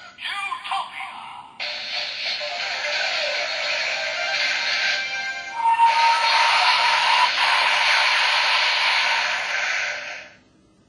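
DX Forceriser toy belt with the Zero-Two Driver unit playing its transformation audio from its built-in speaker. A short electronic voice call comes first, then a dense electronic music and effects sequence that starts abruptly, swells louder about halfway through and stops at the end.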